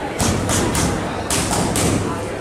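Boxing gloves striking focus mitts in quick combinations: two rapid runs of three sharp smacks, about a second apart.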